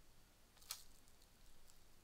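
A single sharp computer-keyboard keystroke about two-thirds of a second in, the Enter key that sets the Maven deploy command running, with a fainter tick about a second later against near-silent room tone.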